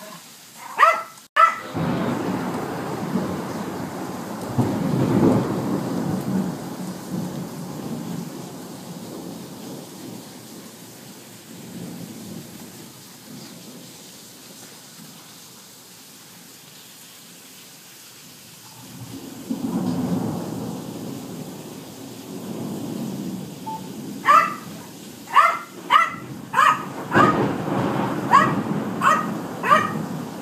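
Thunder from a violent storm rolls in two long low swells, the first starting about two seconds in and the second about two-thirds of the way through, over steady rain. A dog barks twice near the start and then barks repeatedly through the last six seconds, frightened by the storm.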